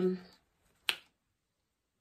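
The end of a drawn-out spoken 'um', then a single sharp click just under a second in.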